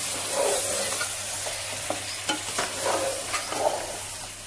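Chicken, potatoes and tomato paste sizzling in a metal pot on the stove while being stirred, with irregular scrapes and clicks of the spoon against the pot. The steady sizzle is the masala frying down before water is added.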